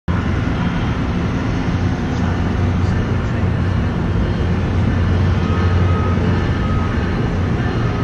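Steady low rumble and hum of a train running at a station platform.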